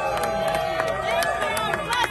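A dense crowd at close range, many people shouting and calling out at once, their voices overlapping, with a few sharp clicks among them.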